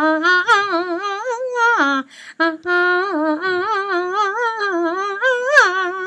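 A woman's voice singing a Beijing opera melody without words, in long wavering notes with heavy vibrato. The line breaks off briefly about two seconds in, then carries on.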